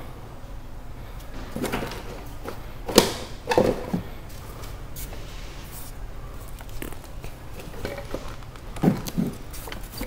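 Scattered clicks and knocks of hands working on a car's damaged front end, handling plastic parts and wiring, the sharpest knock about three seconds in and a few more near the end, over a steady low hum.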